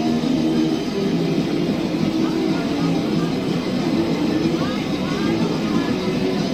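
Lo-fi live cassette recording of an anarcho-punk band playing: distorted guitar, bass and drums blurred together at a steady loudness, with a few short shouted or wailing pitch glides above.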